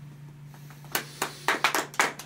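A low steady hum after the music stops, then a few people begin clapping their hands, irregularly, about a second in.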